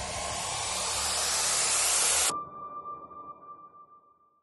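A rising swell of hiss-like noise, a trailer sound-design riser, builds steadily louder for about two seconds and cuts off suddenly. A single high ringing tone is left behind and fades away.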